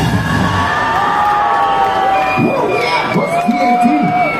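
Festival crowd in a beer tent cheering, with long whistles and shouts, right after the band's song ends.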